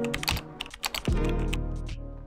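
Keyboard-typing sound effect, a quick run of clicks over intro music, with a deep musical note coming in about a second in.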